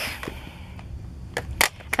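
Plastic ink pad cases handled and knocked together: a few light clicks in the second half.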